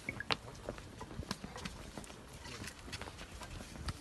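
Faint, scattered footsteps and shuffling on hard ground, with a sharper knock about a third of a second in.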